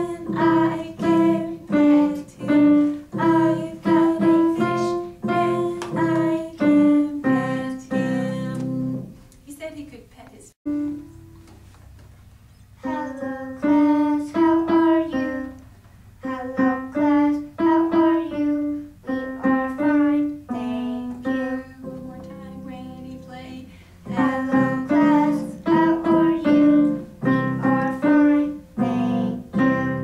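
Digital piano played slowly, one note at a time, by a beginner child four months into lessons. A simple tune comes in about two notes a second, in three phrases with short pauses between them.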